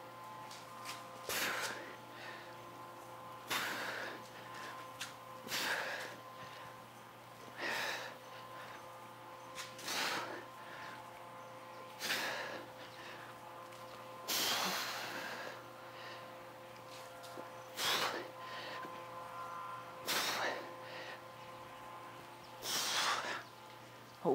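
A person's forceful breaths during a set of dumbbell shoulder presses: about ten short, sharp exhales, one roughly every two seconds, in time with the repetitions.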